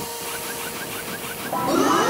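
Cartoon sci-fi gadget sound effect from the Plunge-matic 3000: a steady electronic hum with a short chirp repeating about five times a second. About a second and a half in, a louder rising whoosh with warbling tones takes over.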